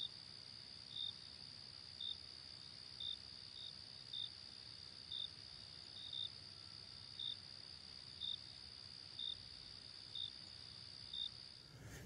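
Faint insect chorus, crickets or similar: a steady high-pitched trill with a short chirp repeating about once a second.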